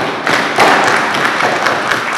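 A roomful of people clapping: dense, steady applause of many quick sharp claps.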